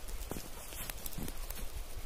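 Footsteps crunching in deep snow, a few irregular steps.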